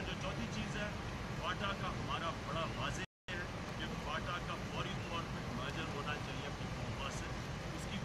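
A man speaking at length into a cluster of microphones, over a steady low rumble. The audio drops out completely for a moment about three seconds in.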